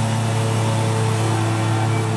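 Steady low hum and hiss, with faint held tones over it that shift in pitch now and then, like quiet background music.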